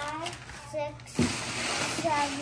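Crumpled brown packing paper rustling as it is gathered up by hand, a steady crinkling that starts about halfway through, after brief voices at the start.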